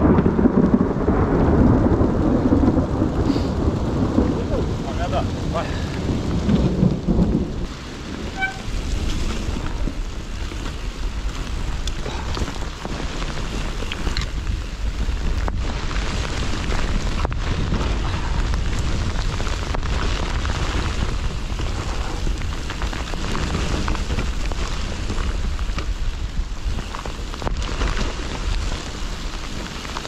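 Nukeproof Mega mountain bike descending a wet dirt trail at speed: a steady rumble of wind on the camera microphone with tyre noise, louder for the first several seconds, and a few sharp knocks as the bike hits bumps.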